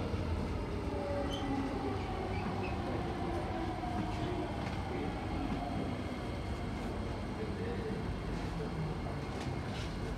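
SMRT C151B metro train slowing into a station, heard from inside the car: steady running rumble of the wheels on the track with a faint traction-motor whine that slowly falls in pitch as the train brakes.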